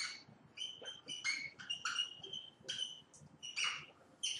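Dry-erase marker squeaking faintly on a whiteboard in a quick series of short, high-pitched strokes as letters and symbols are written.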